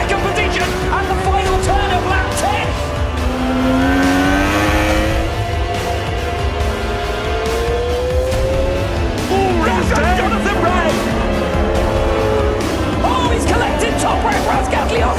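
Background music with a steady low beat, over a racing superbike engine that climbs in pitch twice around the middle as it accelerates.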